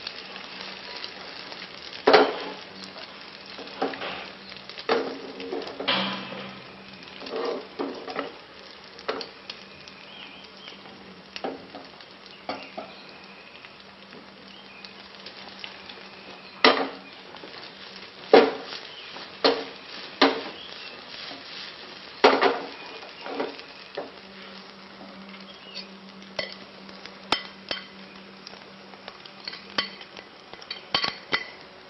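Beaten-egg omelette frying in a non-stick pan with a steady light sizzle, broken by a dozen or so sharp clinks and taps of a utensil against the pan and bowl.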